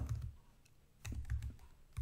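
Typing on a computer keyboard: a few scattered keystrokes, then a quicker run of keystrokes in the second half.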